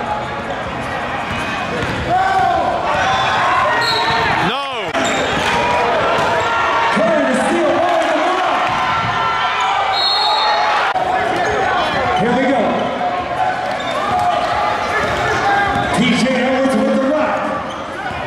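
Basketball dribbled on a hardwood gym court, with players' and spectators' voices and shouts echoing around the gym. About four and a half seconds in, a brief sweeping sound rises and falls.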